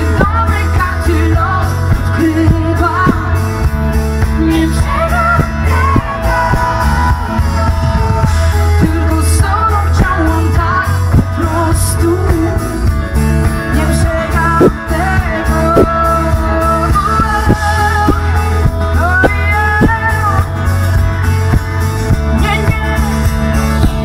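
Live pop-rock music: a woman sings over a band with a heavy, steady bass, loud as heard from the audience.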